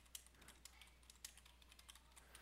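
Faint computer keyboard typing: a quick, even run of keystroke clicks, several a second, over a low steady hum.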